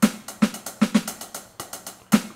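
Electronic drum kit (Roland V-Drums) playing a hand pattern of quick hi-hat strokes with heavier snare hits, without the open hi-hats. The heavier hits come three evenly spaced and then a quick double, repeating about every two seconds.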